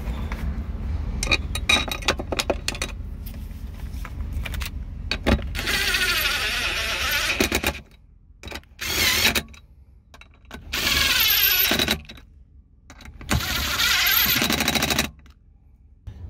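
Short clicks of screws and parts being handled, then a cordless power driver run in four separate bursts of one to two seconds each, driving in the screws that fasten a Jeep Grand Cherokee's airbag control module to the floor of the center console.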